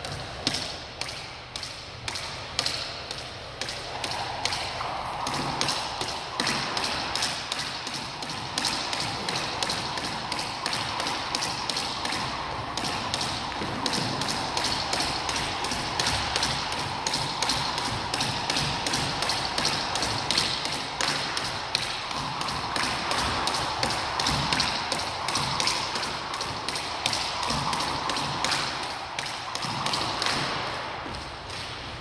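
Jump rope slapping a hardwood floor as a person skips, with the feet landing, in a steady quick rhythm of taps, about three a second.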